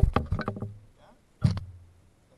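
Rapid, rattling knocks against a canoe hull, then a single hollow knock with a short low ring about one and a half seconds in.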